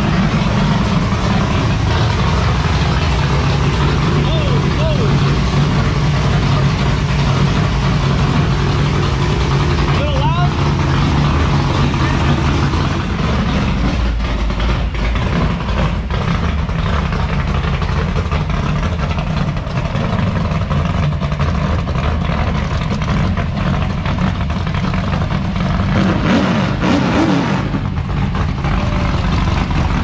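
Dirt-track stock car's engine running through its newly fitted mufflers as the car is driven slowly out of the shop: a loud, steady, deep exhaust note.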